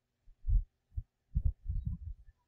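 A few low, dull thumps at irregular intervals, more closely packed in the second half.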